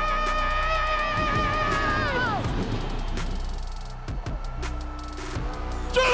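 Men singing a long held note into microphones with a wide vibrato, which slides down and breaks off about two seconds in. A steady beat carries on after it.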